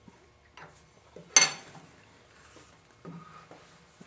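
A single sharp metallic clink about a second and a half in, with a brief high ring: a steel plane blade set down on a cast-iron table saw top. Faint knocks of wooden parts being handled come before and after it.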